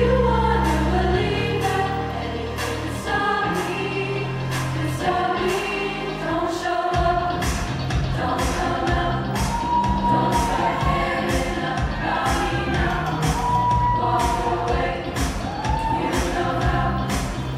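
A show choir singing a pop number over a steady drum beat and bass accompaniment; about seven seconds in, the bass changes from long held notes to a busier, quicker pattern.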